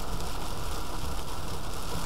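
Steady noise of a car driving through heavy rain on a wet road, an even wash of sound without breaks.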